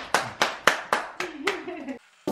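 A few people clapping in a steady rhythm, about four claps a second, dying away near the end, with a voice under it.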